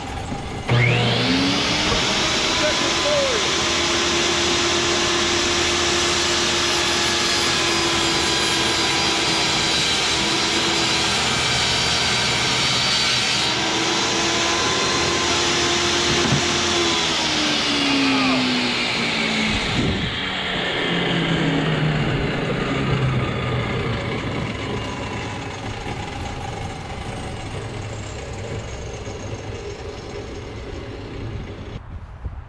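Ryobi benchtop table saw switched on. Its motor whines up to speed within about a second and runs steadily while a thin board is cut. It is then switched off and winds down over several seconds, its pitch falling.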